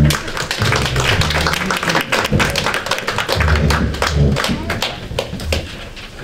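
A small roomful of people applauding: many hand claps that thin out near the end, with low thumps underneath.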